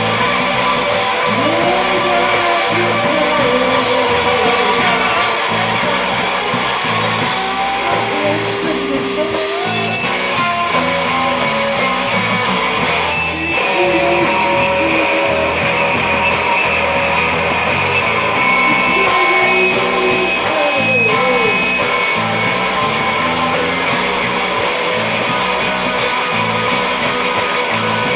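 A live rock band playing: a hollow-body electric guitar strummed steadily over drums and cymbals.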